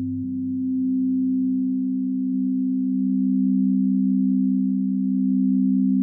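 Behringer ARP 2500 modular synthesizer sounding sustained sine-wave tones: two steady low pitches held together, with a deeper tone dropping away about a quarter second in.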